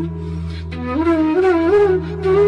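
Background music: a flute melody over a steady low drone, holding one note and then, a little under a second in, starting a new phrase that steps upward.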